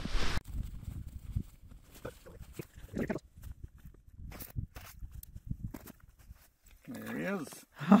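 Faint low rumble with scattered soft knocks and handling sounds, then, near the end, a man's drawn-out exclamation that rises and falls in pitch.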